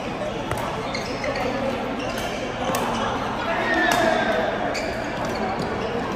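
Badminton rally: rackets striking a shuttlecock, a series of sharp, irregularly spaced hits, over a steady background of voices and play from other courts.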